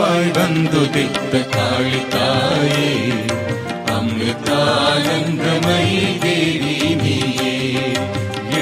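Instrumental interlude of a Tamil devotional song (bhajan): a sustained melody line over steady percussion.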